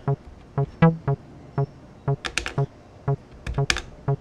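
Avalon Bassline TB-303-clone analog bass synth playing a sequenced acid pattern of short, plucky notes on the same low pitch, with the accent turned up so that one note lands louder, like a harder hit. Its step buttons click in two quick bursts of a few presses, about halfway through and again near the end.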